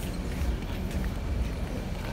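Low, steady rumble of large diesel bus engines idling.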